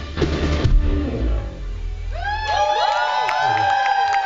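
A rock band's drums and guitars play the last bars of a song and die away within the first two seconds. Then the audience cheers, with many rising and held whistles overlapping.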